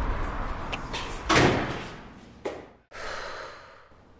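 A door bangs shut about one and a half seconds in, its sound dying away, followed by a lighter knock about a second later.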